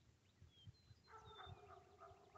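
Faint wild birds calling: small quick chirps throughout, and from about a second in a longer, lower call from a larger bird.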